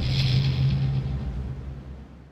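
A low rumbling drone with a steady hum, used as a scene-transition sound effect, fading away toward the end.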